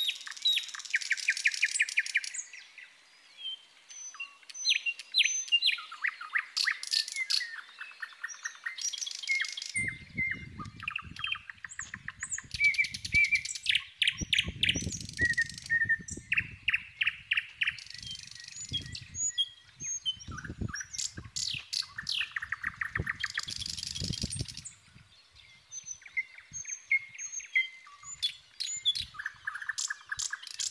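Many small birds chirping and trilling, their calls overlapping almost without a break. From about ten seconds in, scattered dull low rumbles sit beneath the birdsong.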